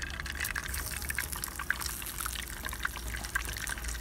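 Raw egg frying in a little oil in a frying pan heated only by the sun: faint, irregular light crackling and sizzling over a steady low hum. The sizzle is the sign that the pan is hot enough in the 47-degree heat to cook the egg.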